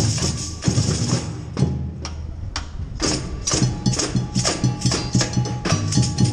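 Street percussion band playing a driving funk groove on drums and hand percussion. The higher, sharper hits drop away briefly near the middle, and the full band comes back in at about the halfway point.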